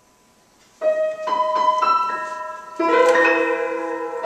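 Acoustic grand piano played live, coming in about a second in with a few separate notes, then fuller, louder chords from near the three-second mark.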